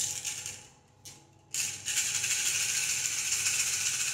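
A handful of small divination pieces rattled together in cupped hands: two short rattles, then steady continuous shaking from about a second and a half in, as they are mixed before being cast.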